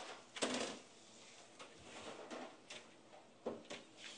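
Dehydrator trays being handled and set out on a worktable: a louder brushing scrape about half a second in, then scattered light clicks and taps.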